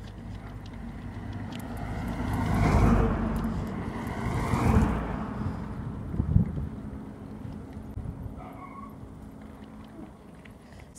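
A car passing on the road, its tyre and engine noise swelling to loudest about three seconds in and fading away by about five seconds.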